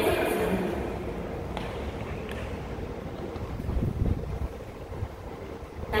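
Low wind rumble on the microphone over an open-air ballpark's ambience, with the echo of the stadium PA announcement dying away at the start.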